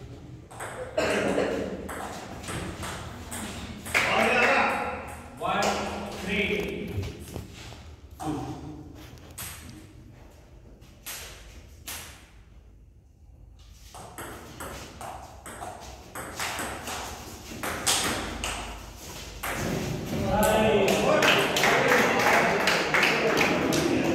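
Table tennis rallies: the ball clicking sharply off the paddles and the table in quick back-and-forth hits, with voices in the room between points.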